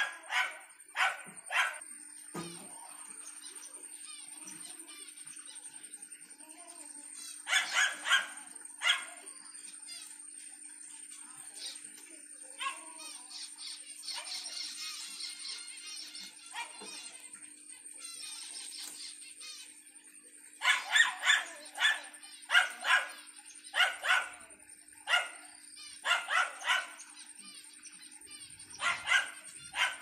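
A dog barking in short bursts of a few barks at a time, loudest near the start, around eight seconds in and through the last third. Under the barks, small caged finches twitter faintly and continuously, and a steady high whine runs throughout.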